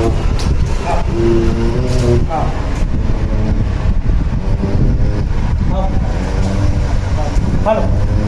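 German Shepherd howling with its head raised: long drawn-out notes, a couple of times over, some sliding upward. A steady low rumble runs underneath.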